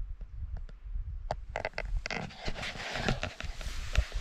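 Handling noise: a few scattered clicks, then from about a second and a half in, a steady run of rustling and scraping as clothing and the camera are shifted and the camera is turned around.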